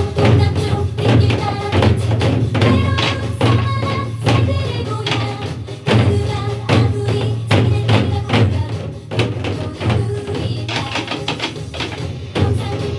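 Korean buk nanta drumming: an ensemble of sticks striking the hide heads of large barrel drums in a fast, busy rhythm, played over a recorded song backing track.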